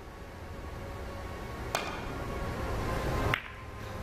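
Three-cushion billiards bank shot: a sharp click of the cue tip on the cue ball about two seconds in, then a duller knock about a second and a half later as the cue ball strikes the white ball. The shot misses its scoring point, hitting only the white ball. A low background sound rises steadily underneath.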